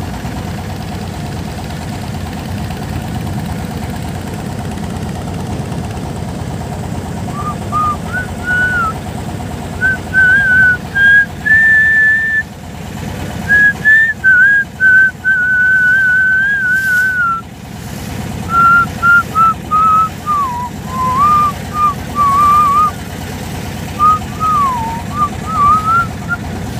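A person whistling a tune in short phrases, starting about seven seconds in, over the steady drone of a boat's engine.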